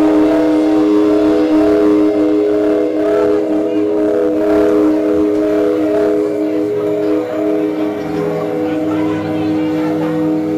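A live band's electric guitars and keyboard holding a steady droning chord of several sustained tones, with a lower note joining about eight seconds in.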